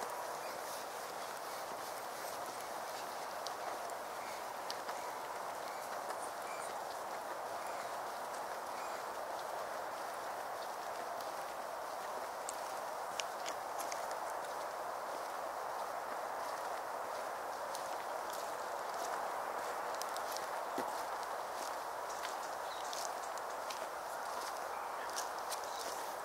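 Footsteps walking on a hard path, a scatter of faint clicks over a steady hiss.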